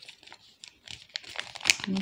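A seed packet crinkling as fingers squeeze and feel it to gauge how many seeds are inside. Quick crackles build up and get louder toward the end.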